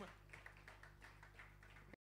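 Faint, thinning audience applause, scattered claps several a second, over a low steady hum, cut off abruptly just before the end.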